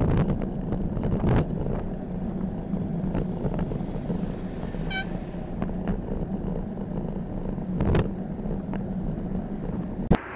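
Wind and road noise on a bicycle-mounted camera riding in traffic: a steady low rumble with a few knocks, the loudest about a second in and near the end. A short high beep about halfway through.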